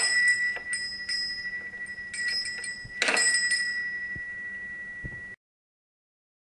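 A small metal bell struck several times and left ringing, loudest at the start and again about three seconds in, cut off abruptly a little after five seconds.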